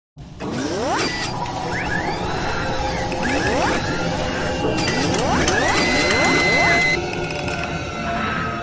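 Mechanical sound effects for an animated logo intro: several rising servo-like whines with ratcheting clicks and whirs over a steady bed. About seven seconds in the sound changes and drops a little as the logo settles.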